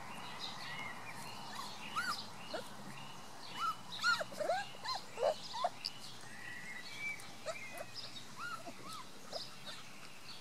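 Three-week-old Beauceron puppies squeaking and whining as they jostle to nurse under their mother. The short rising-and-falling squeals come thickest and loudest in the middle, then thin out.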